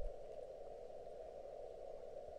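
Quiet room tone: a faint, steady hiss with nothing else happening.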